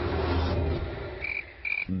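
Two short, high-pitched chirps about half a second apart over a faint outdoor ambience with a low steady hum, like an animal call.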